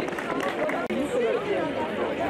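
Several people talking at once: crowd chatter, with no other clear sound.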